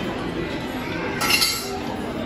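Metal serving spoon scooping diced potatoes from a stainless steel pan onto a ceramic plate, with a sharp clink about a second and a quarter in.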